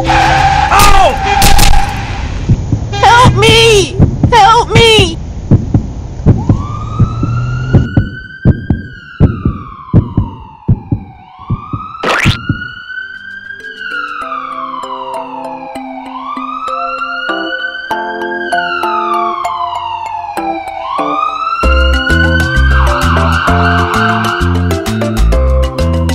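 Cartoon siren sound effect of a toy ambulance: a slow wail that rises and falls every four to five seconds, starting about six seconds in, over background music. Before it, upbeat music with short squeaky cartoon sounds.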